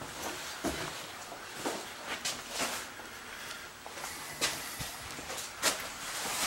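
Irregular footsteps and scuffs on a concrete floor, with a few sharper knocks from handling the camera.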